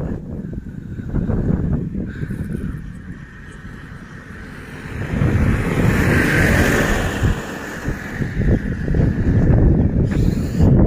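Wind buffeting the microphone throughout. A motor vehicle passing on the road makes a broad swell of noise that builds about five seconds in and fades over the next few seconds.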